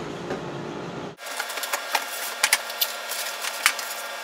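Plastic wrapping crinkling and cardboard rustling as a faucet in a plastic bag is pulled out of its box: a dense run of small crackles and clicks. It starts abruptly about a second in, after quiet room noise.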